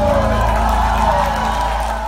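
Live band music from the audience floor: a held low bass note under a wavering, slowly falling high tone, with a crowd cheering.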